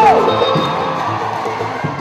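Live West African band music with a crowd cheering; a long held high note breaks off right at the start.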